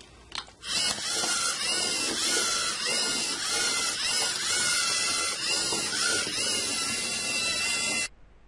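LEGO Mindstorms EV3 robot's geared servo motors whirring and whining as it edge-follows a line, the pitch rising and falling about twice a second as the wheels alternate speeds in its zigzag. There is a brief click near the start.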